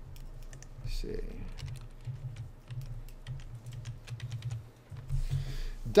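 Typing on a laptop keyboard: a run of quick, uneven key clicks that stops shortly before the end.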